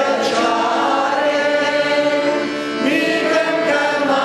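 A man chanting an Armenian liturgical hymn or prayer in slow, long-held notes, moving to a new pitch a few times.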